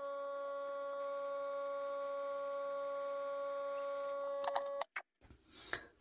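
Hot air rework gun blowing on a phone circuit board to melt the solder under a coil: a steady hum with a fixed whine. It cuts off suddenly shortly before the end, just after a couple of light clicks.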